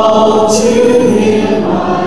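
Hymn sung by a congregation, many voices holding long notes, led by a man's voice with digital piano accompaniment.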